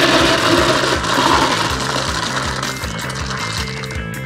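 A bucketful of small wooden cubes poured into a glass aquarium: a dense clatter of blocks hitting the glass and each other, tailing off about halfway through, over background music with a steady beat.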